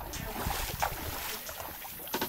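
Wind on the microphone, with faint knocks and rustles as a mesh fishing keep net is handled on a boat.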